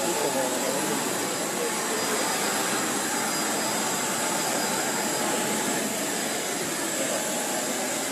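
Steady whine and rush of a parked jet aircraft's turbine, with the chatter of a crowd of voices underneath.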